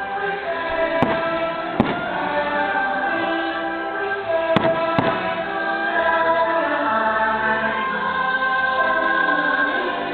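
Orchestral show music with a choir singing plays throughout, and four sharp firework bursts crack over it: two at about one and two seconds in, and two more about four and a half to five seconds in.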